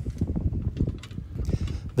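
Low wind rumble on the microphone, with faint scattered clicks and knocks.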